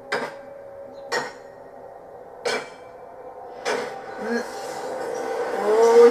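Metal being hammered: four sharp clangs a little over a second apart, heard from the show playing in the room. A voice comes in near the end.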